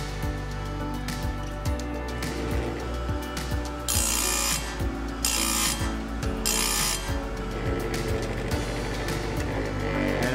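Bench-mounted electric chainsaw sharpener grinding a chain tooth: three short, hissing grinds of the wheel against the tooth, each under a second, about four to seven seconds in. Background music plays throughout.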